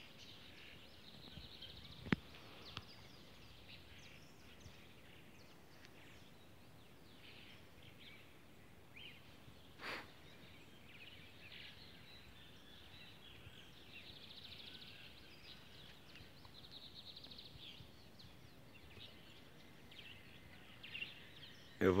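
Faint birdsong: scattered short chirps and a few longer trills from birds, with a single sharp click about two seconds in and a brief louder sound about ten seconds in.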